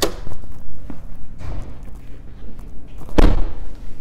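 A 2016 Ford Escape's front door opening with a sharp latch click, then slammed shut with a loud, heavy thud about three seconds in.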